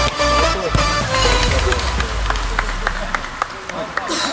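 Electronic dance music with a heavy bass beat that fades out in the second half, with voices calling over it.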